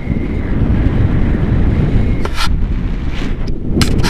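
Wind buffeting an action camera's microphone in flight under a paraglider: a loud, steady low rumble. A faint thin whistle fades out about two seconds in, and a few short sharp crackles follow in the second half.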